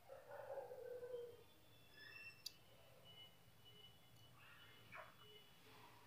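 Near silence: faint room tone with a few faint distant sounds, one lasting about a second and a half at the start, and a single sharp click about two and a half seconds in.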